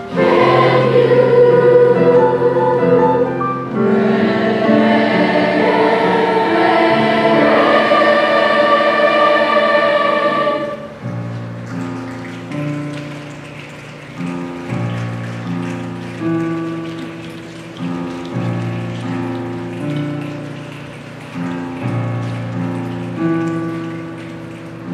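Youth choir of boys' and girls' voices singing with keyboard accompaniment, loud and full for about the first ten seconds, then dropping suddenly to a much quieter passage in which repeated struck keyboard chords stand out.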